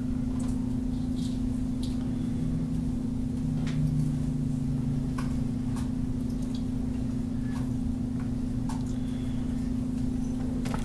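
A steady low electrical hum with a faint lower tone swelling briefly in the middle, and a few faint clicks scattered through.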